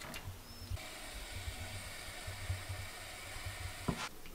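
Steam hissing steadily from a just-opened pressure canner full of hot canning jars. The hiss starts abruptly about a second in and stops just before the end, where there is a single sharp knock.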